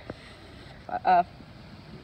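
A young male voice says a single hesitant 'uh' about a second in, over steady faint background noise.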